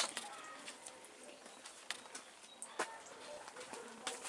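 Quiet, with a few light knocks and handling sounds from a plastic watering can being carried, and faint bird calls, possibly a dove cooing.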